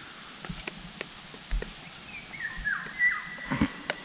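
Small clicks and knocks from handling a plastic PVA stick tube and plunger, with a bird calling in the background from about halfway through: a few short falling whistles, then a held note.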